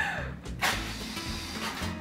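A party horn blown in one long, noisy, buzzing blast that starts about half a second in and stops just before the end, over background music.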